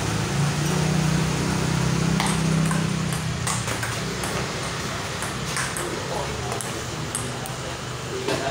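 Table tennis rally: the ball clicking sharply off paddles and the table at irregular intervals, over a steady low hum that fades about halfway through.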